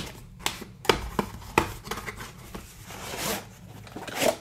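A cardboard product box handled and opened by hand: a series of light taps and clicks, then a rubbing, sliding noise around three seconds in as a hard plastic carrying case is drawn out of the box.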